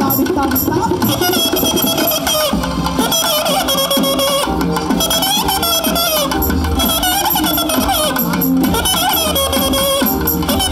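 Live Tamil folk (nattupura padal) music from a stage band: a wavering melody line on keyboard over a steady drum beat, with no singing heard.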